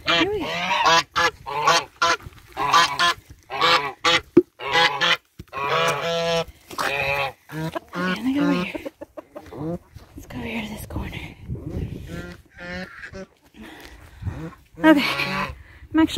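Domestic geese honking, many short calls in quick succession. The calls thin out and grow quieter past the middle, then come loud again near the end.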